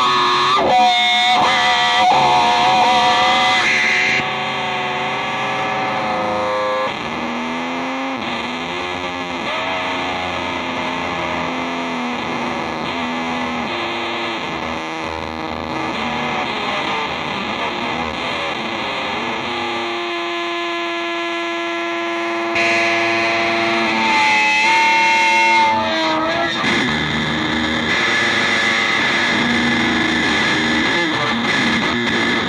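Solo electric guitar improvisation played through distortion and effects pedals: a dense, noisy texture with sliding, bending tones. About twenty seconds in, a steady held note with clear overtones rings for a couple of seconds before the louder noisy wash returns.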